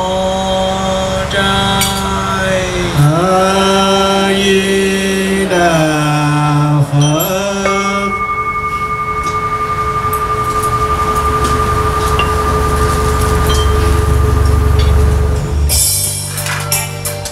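Buddhist chanting in a single voice, long held notes that slide between pitches, for about the first half. Then a single steady tone is held to the end.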